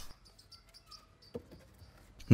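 Quiet, with one light knock about a second and a half in: a hammer tapping an interlocking plastic-and-sand brick into place.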